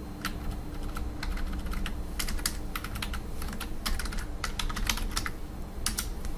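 Computer keyboard typing: irregular, quick key clicks as a command is typed, over a faint steady hum.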